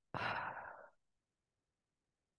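A woman sighs: one breath out through the mouth, just under a second long, fading as it goes, close on a headset microphone.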